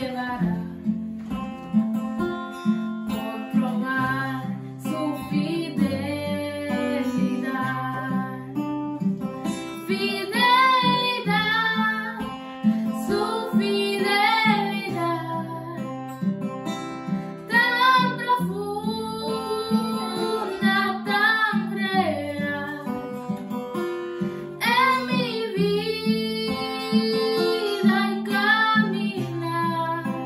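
Acoustic guitar accompanying a woman singing a song. The voice is strongest from about ten seconds in.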